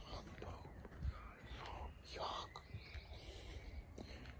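Faint, breathy whispering of a man's voice in a pause mid-sentence.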